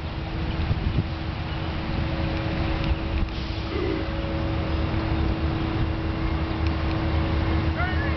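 Wind buffeting the microphone over the steady rush of fast-flowing floodwater, with a faint steady hum underneath. A brief bird call sounds near the end.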